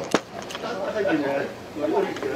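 Low voices of people talking at the table, quieter than the main talk around it, with a single sharp click just after the start.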